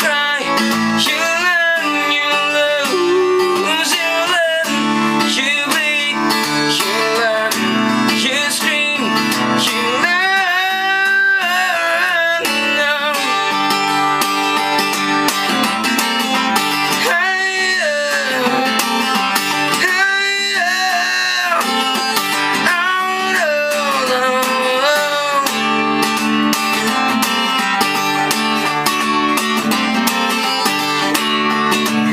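Steel-string acoustic guitar strummed steadily in a song rhythm, with a man's voice singing long, gliding notes over it.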